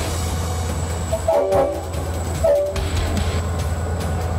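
V/Line diesel locomotive running by with a steady low engine rumble, its horn sounding briefly about a second and a half in and again near three seconds.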